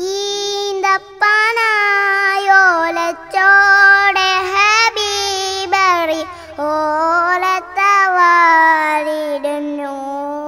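A boy singing a Malayalam song solo, long held notes that waver in pitch, sung in phrases with short breaths between them.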